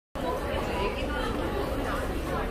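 Indistinct chatter of several voices in a shop, with a steady low rumble underneath.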